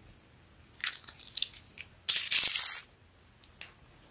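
Handling sounds as a T-shirt and a tape measure are moved about: a soft rustle with a few light clicks about a second in, then a louder, longer rustle a little after two seconds.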